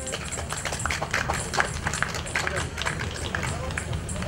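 Scattered applause: many irregular hand claps, thinning and uneven rather than a dense roar.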